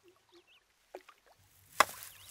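Faint high chirps of small birds over quiet outdoor ambience. Near the end the ambience grows and a single sharp knock sounds.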